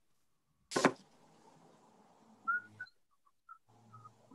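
A sharp knock on an open video-call microphone about a second in, then faint room noise that cuts in and out, with a few short high chirps.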